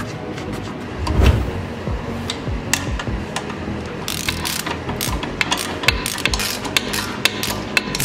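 Metal tool taps and knocks, then from about four seconds in rapid ratchet clicking as a ratchet with a hex bit works the nut of a car's front stabilizer link, over steady background music.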